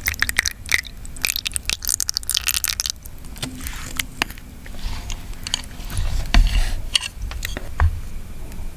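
Close-miked spoon and ladle scooping and stirring thick mung bean porridge in a bowl: wet squelching and sloshing with many small clicks of the utensils, busiest in the first few seconds, and a few soft low thuds later on.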